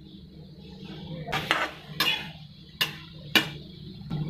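A steel spoon stirring cluster beans and potatoes in a metal kadhai, clinking and scraping against the pan about five times in the second half, the loudest stroke near the end.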